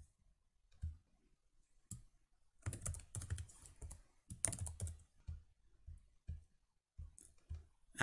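Computer keyboard typing: two quick runs of keystrokes a few seconds in, with a few single clicks scattered before and after.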